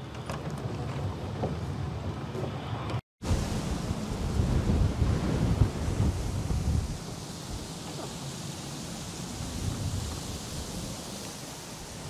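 Wind buffeting the camera microphone during an electric unicycle ride, a heavy low rumble with a steady hiss over it. The sound cuts out for an instant about three seconds in, and the rumble is strongest for a few seconds after that.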